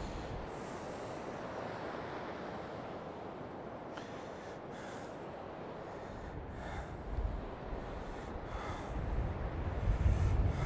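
Rough surf washing steadily onto a sand beach, the sea choppy and wild, with low rumbles of wind on the microphone building toward the end.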